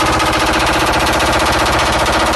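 Machine-gun fire sound effect in a rap track: one unbroken burst of rapid automatic shots at a steady, loud level.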